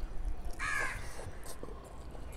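A single harsh crow caw about half a second in, followed by soft mouth and hand noises of eating rice by hand.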